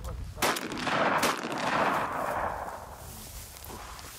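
Two rifle shots fired outdoors, about half a second in and just after a second in, each report trailing off over about two seconds.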